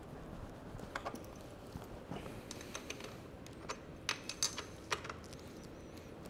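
Faint, scattered light metal clicks of a multi-tool wrench working a bicycle's rear axle nut as it is tightened: a few ticks about a second and two seconds in, and a quick cluster between four and five seconds in.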